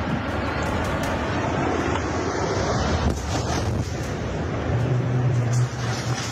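A tall power-plant smokestack toppling in a demolition: a continuous loud rumble as it falls and crashes down, with wind buffeting the microphone.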